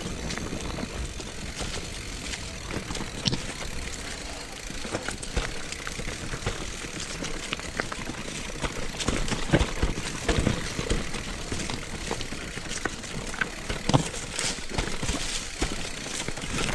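Mountain bike riding down a dry-leaf-covered dirt singletrack: tyres rolling over leaves and dirt with the bike rattling and giving sharp knocks over roots and stones. The knocks come thickest around ten seconds in, with a loud one near fourteen seconds.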